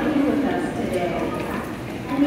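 Station platform crowd sound: voices together with the footsteps and rolling suitcases of passengers walking off an arrived train.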